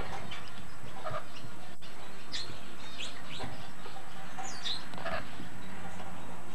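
Rainbow lorikeet giving short chirps and squawks, about half a dozen scattered through, over a steady background hiss.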